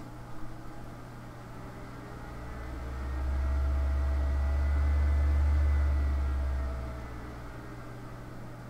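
A computer's cooling fan spinning up to a low hum with a faint whine, swelling from about two seconds in and dying back down near the end as the machine works under heavy processing load.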